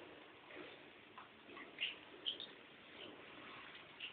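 Faint handling sounds of hamsters being bathed in a small bowl: a few short, soft ticks, two of them a little louder just before and after the middle.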